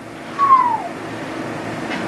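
A single short high squeak, about half a second long, falling in pitch, heard early on over faint room hum.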